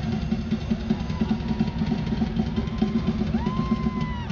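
A live drum solo on a large drum kit: dense, continuous rolls of bass drum and tom hits with cymbals above. A thin tone rises and holds over the last second.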